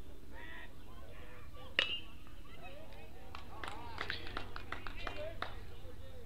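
Aluminium baseball bat cracking once against a pitch about two seconds in, a short ringing ping that fouls the ball off. Then scattered shouts and calls from players and spectators across the field.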